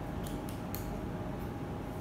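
Classroom room tone with a steady faint hum, and a few short high-pitched clicks or creaks in the first second.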